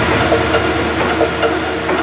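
Techno track in a breakdown: the kick drum drops out, leaving a hissing noise sweep over sustained synth tones with a few short blips.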